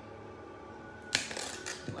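Hands prying at the closures of a cardboard box: a sharp snap about halfway through, then a short run of scrapes and clicks.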